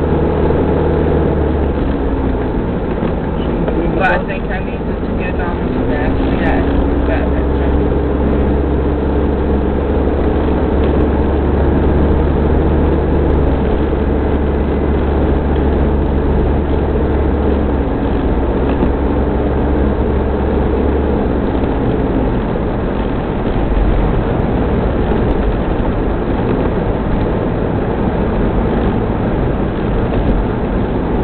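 Mitsubishi Pajero 4x4's engine and tyre noise heard from inside the cabin while driving on a snow-covered road: a steady low drone whose engine pitch falls and rises a few times as the speed changes. A few light clicks come about four to seven seconds in.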